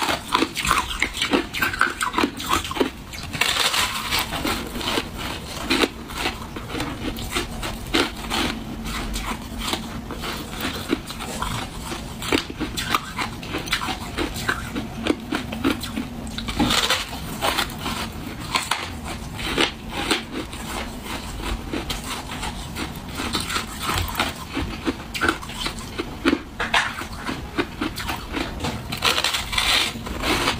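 Close-miked biting and chewing of a lump of freezer frost: dense, continuous crackling crunches, some bites louder than others.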